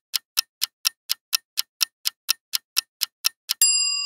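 Clock-style ticking sound effect, about four ticks a second, counting down a quiz answer timer. Near the end a bright chime rings out, louder than the ticks, marking the reveal of the correct answer.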